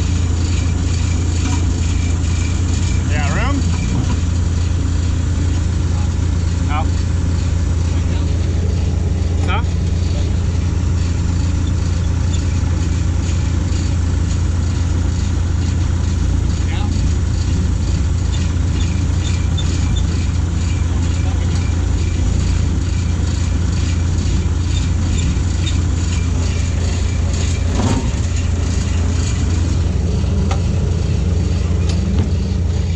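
A diesel engine of heavy equipment idling steadily: a loud, unchanging low hum, with faint voices and a few brief squeaks over it.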